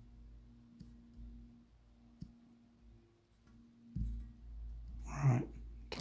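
A few faint, sparse fingertip taps on a smartphone touchscreen over a low steady hum, with a short murmur of a voice about five seconds in.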